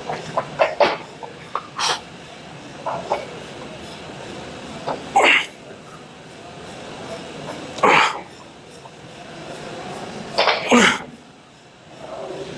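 A man's sharp, forceful breaths out while doing dumbbell sumo squats, spaced roughly two and a half to three seconds apart in the second half, with a few short clicks near the start.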